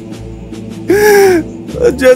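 A man's anguished cry: one drawn-out call about a second in, its pitch rising and falling, over steady background music.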